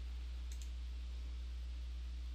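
A faint computer mouse click about half a second in, over a steady low hum.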